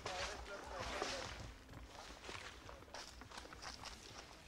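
Footsteps and rustling of a file of people walking along a forest trail carrying loads, with faint voices in the first second or so.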